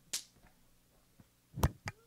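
Quiet room tone with a brief soft hiss near the start. Then, in the last half second, come three short sharp knocks, the first the strongest.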